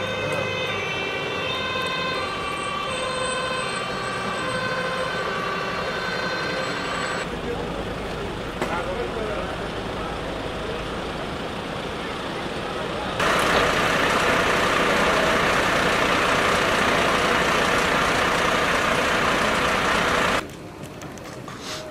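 Fire engine's two-tone siren sounding in alternating high and low notes for about the first seven seconds. After that comes steady vehicle and outdoor noise, louder from about thirteen seconds in.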